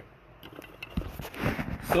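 Handling noise from a phone being picked up and moved: a run of soft, irregular knocks and rubs starting about half a second in.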